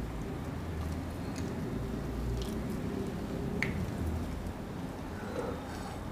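Shortcrust pastry dough of flour, cold butter and egg being squeezed and worked by hand in a glass bowl: faint, soft squishing with a few small clicks.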